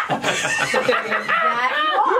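A woman laughing, high-pitched and sustained.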